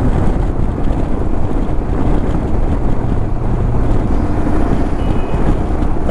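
Royal Enfield Himalayan motorcycle riding at highway speed: steady wind noise on the microphone over the engine and the tyres on the wet road.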